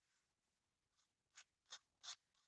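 Faint scratchy strokes of a small sanding block rubbed over a Barbie doll's plastic neck, about three strokes in the second half, smoothing a super-glued neck repair.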